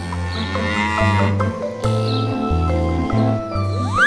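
A cow mooing: a long moo in the first half and a fainter one after it, over playful background music with a steady bass line. Near the end a sweeping rising whistle sound effect begins.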